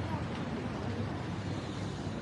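Street ambience: a steady low rumble of traffic with faint background voices.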